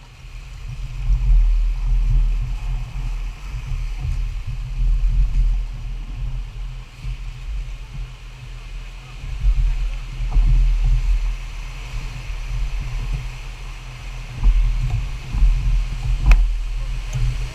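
Rushing whitewater of a large river rapid heard from a raft, under an uneven low rumble of wind and water buffeting the camera microphone that swells and fades every second or two.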